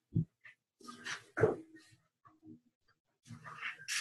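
A dog whining and giving short barks in three brief bursts, heard through a video-call microphone.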